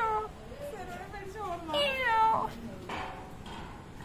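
A kitten meowing: one call tailing off at the start, a fainter one after it, and a clear, louder meow falling in pitch about two seconds in.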